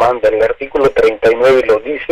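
A person speaking, in phrases broken by short pauses.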